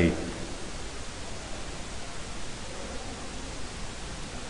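Steady, even background hiss of a home voice recording in a pause between spoken sentences, with the tail of a man's word in the first moment.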